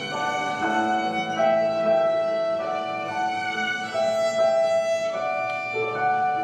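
Live trio of violin, clarinet and digital piano playing a slow, sweet melody with long held notes.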